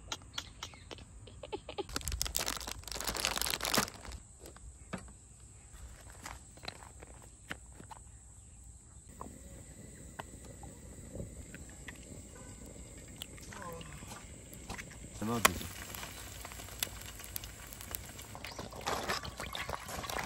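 Small clicks and handling sounds of camp cooking prep at a grill pan, with a burst of rustling noise about two seconds in. There is a short laugh about three-quarters of the way through.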